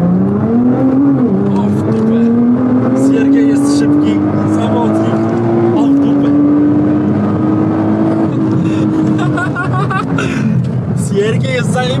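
Nissan GT-R's twin-turbo V6 under hard acceleration, heard from inside the cabin. The revs climb, drop at a gear change about a second in, and climb steadily again to a second upshift near six seconds. They then hold and fall away as the throttle comes off near the end.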